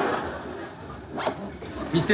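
Zipper on a soft guitar gig bag being zipped shut in one quick pull about a second in.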